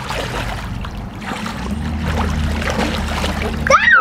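Pool water splashing and sloshing as a child swims through it, with a child's voice breaking in near the end.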